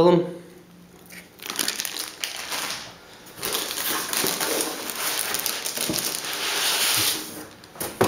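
Plastic packaging crinkling and rustling as a netbook wrapped in a plastic bag and foam end-caps is handled and lifted out of its cardboard box. There is a short bout about a second and a half in, then a steadier stretch of about four seconds.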